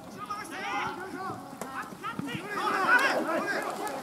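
Several men's voices shouting and calling over one another during live rugby play, loudest a little past halfway.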